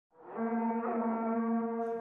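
A single long horn-like note held at a steady pitch, fading in over the first half second and cutting off abruptly at the end.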